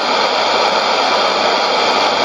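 Steady shortwave static hiss from a Sony ICF-2001D receiver tuned to an empty frequency with no station on it while the set is being retuned.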